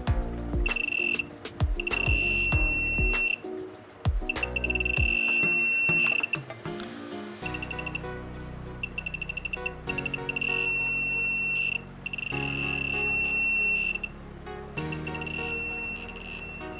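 Piezo buzzer of a homemade Arduino metal detector beeping at a high pitch as its search coil passes over metal parts. It sounds in long steady tones of one to two seconds broken by rapid trains of short beeps, over background music.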